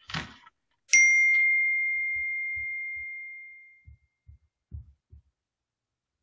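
A single bright ding about a second in: one clear tone that rings out and fades away over about three seconds, followed by a few faint low knocks.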